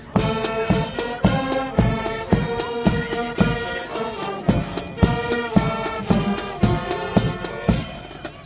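Brass band music with a steady drum beat, about two beats a second.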